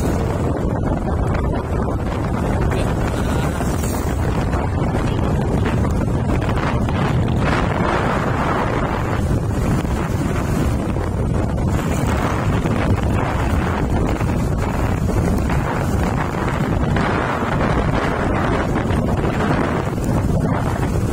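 Steady wind rush on the microphone of a camera carried along on a moving vehicle, mixed with low engine and road noise.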